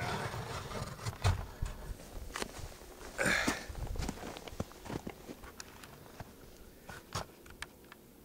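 Camera handling noise and footsteps crunching in snow: irregular clicks, knocks and rustles, with one louder crunching rustle about three seconds in.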